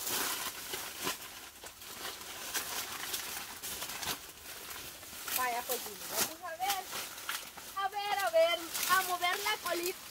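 Faint crackling and rustling for the first few seconds, then a high-pitched voice speaking softly from about halfway through, with words too indistinct to transcribe.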